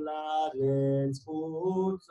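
A man's voice chanting a kinah, a Tisha B'Av lament, to a Moroccan melody, holding long, steady notes with a short break in the middle.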